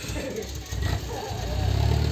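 Engine of a loaded dump truck running as it slowly reverses, its low rumble growing louder about a second and a half in.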